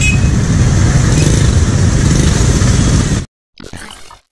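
Motorcycle engines idling and creeping in a queue of traffic, a steady low rumble with road noise. It cuts off abruptly about three seconds in, leaving a brief, much quieter stretch.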